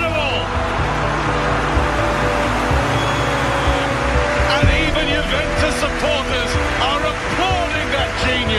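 Music mixed with a football match broadcast: stadium crowd noise and a commentator's excited voice, which comes in more in the second half.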